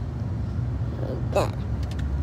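Steady low rumble of a car on the road, heard from inside the cabin.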